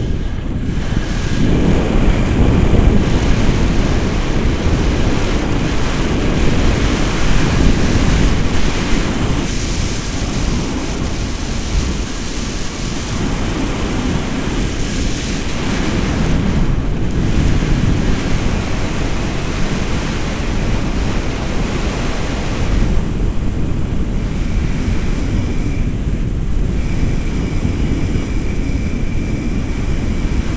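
Wind buffeting the camera's microphone in flight under a tandem paraglider: a loud, steady rushing noise, heaviest in the low end, that swells and eases slightly.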